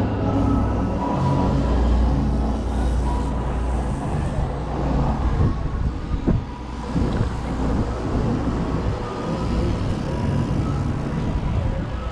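Wind rushing over the microphone of a camera on a bicycle moving fast down a city street, a steady roar with a heavy low rumble, with road traffic noise mixed in.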